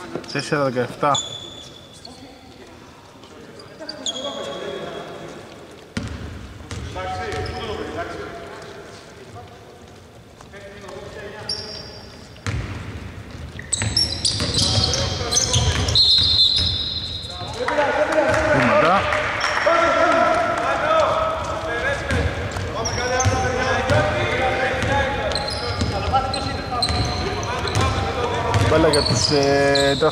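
A basketball dribbled and bouncing on a wooden court in a large, mostly empty arena, with short high sneaker squeaks. Voices call out over the play, louder in the second half.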